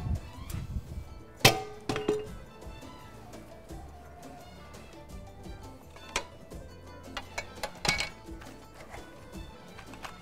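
Metal cookware clanking on a gas stove as a frying pan is set on the burner. There is a sharp clank with a short ring about one and a half seconds in, and a few more knocks around six and eight seconds in, over soft background music.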